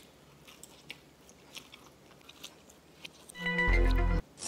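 Faint chewing and biting of a mouthful of pancake, small soft clicks over a quiet room. A little over three seconds in, a loud burst of music with a deep bass note comes in.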